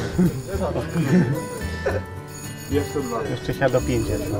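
Quieter talk from people nearby over background music, with no single loud event.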